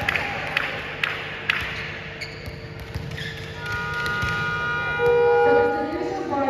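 A ball bouncing on a sports-hall floor, a few sharp knocks about half a second apart. Then a steady horn-like tone with several pitches joins about halfway through and grows louder near the end.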